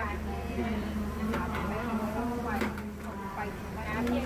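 Background chatter of several voices in a train carriage, over a steady low hum.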